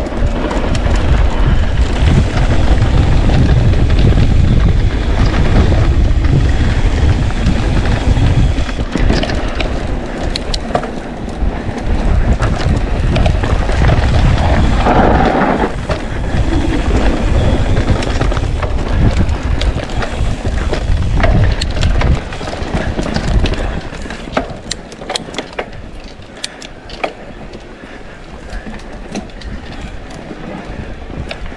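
Mountain bike rolling fast down a dirt singletrack, with heavy wind buffeting on the camera microphone and the rumble and rattle of the bike over the trail. The rumble eases about two-thirds of the way through, leaving scattered sharp clicks and rattles.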